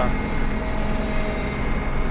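Combine harvester running while its unloading auger empties the grain tank: a steady low rumble with a faint steady whine, heard from inside the cab.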